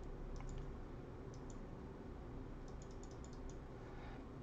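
Faint clicking on a computer: a couple of single clicks, then a quick run of about half a dozen, as new notebook cells are added one after another.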